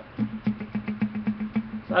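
A steady low hum with faint, irregular ticks.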